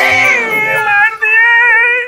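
A man's drawn-out, whiny cry of fright, like comic whimpering, high-pitched with a wobbling pitch and a brief catch about a second in.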